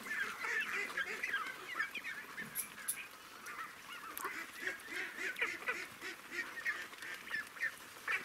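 A flock of young ducklings calling continuously: many short, overlapping high peeps, with a few lower calls beneath.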